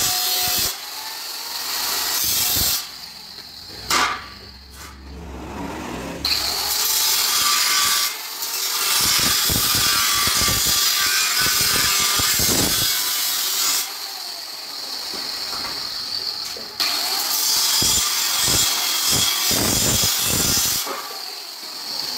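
Angle grinder cutting through rectangular mild-steel tube, a harsh high-pitched grinding that comes in long stretches. It eases off in a lull about 3 to 6 seconds in, with a single click, and again for a few seconds in the middle. It fades near the end as the cut is finished.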